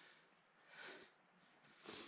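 Faint breathing of a person walking, a soft breath about once a second.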